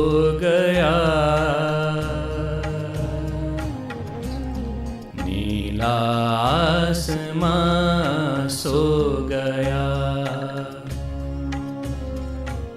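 A man singing a Hindi film song in long, wavering held notes, over a backing track with a steady low beat.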